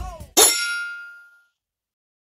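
The last moment of the outro music, then a single metallic clang struck once that rings out and fades over about a second.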